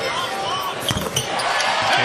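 NBA arena game sound: steady crowd noise with short squeaks and a single sharp thud about a second in, the crowd growing louder near the end as a three-point shot goes up.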